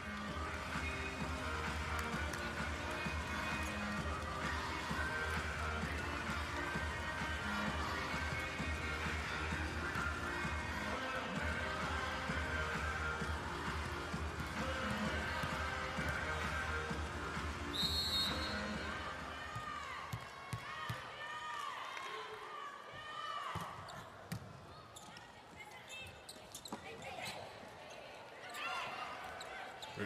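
Arena music plays over the PA with a steady bass during the volleyball timeout. A short whistle sounds about two-thirds of the way in. After it the music drops away, leaving scattered ball bounces and shoe squeaks on the indoor court as play resumes.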